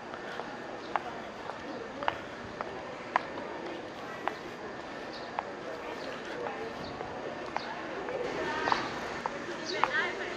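Footsteps on brick paving: sharp, evenly spaced clicks about once a second, over a steady outdoor background.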